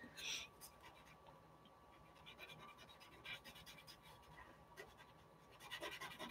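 Faint scratching of a cotton swab rubbing oil pastel into drawing paper, a little louder near the end.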